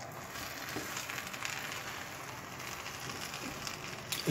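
Food sizzling steadily in a hot pan, with a fine crackle.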